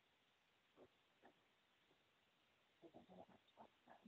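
Near silence: room tone, with a few faint, brief sounds in the last second or so.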